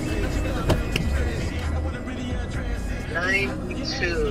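Music playing from the car radio inside the cabin, with a steady bass line under it; a voice is heard briefly about three seconds in.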